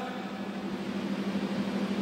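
Steady low hum with an even hiss behind it, in a pause between spoken phrases.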